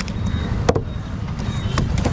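Large fish-cutting knife knocking against a wooden cutting block as a grey mullet is cut up: a few sharp knocks, the loudest a little under a second in, over a steady low rumble.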